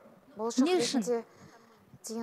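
A woman's voice: one short drawn-out vocal sound about half a second in, its pitch rising and then falling, with a breathy hiss, lasting under a second.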